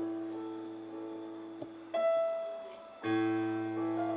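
Piano played slowly in a classical piece: a chord left to ring and fade, a single higher note struck about halfway through, then a fuller chord with a low bass note near the end.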